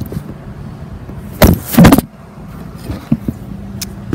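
Phone microphone being handled as the camera is adjusted: two loud rubbing bursts about one and a half seconds in, a few small knocks later, and a steady low hum throughout.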